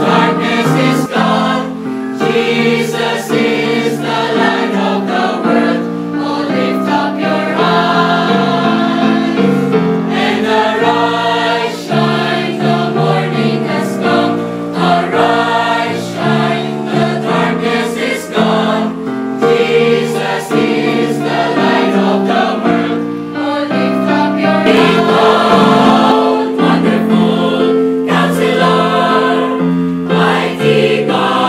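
A mixed choir of female and male voices singing a hymn in parts, with sustained chords.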